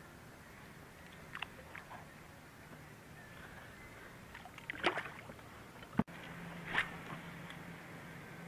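Water splashing and sloshing in short bursts beside a kayak as a bass is lowered from a lip-grip tool and released. The loudest splashes come about five seconds in and again near seven seconds, with a sharp click between them.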